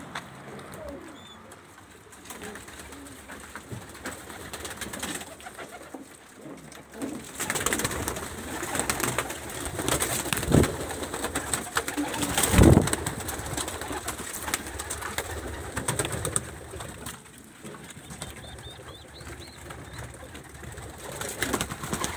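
Domestic racing pigeons cooing and stirring inside a wooden loft, with two louder thumps around the middle.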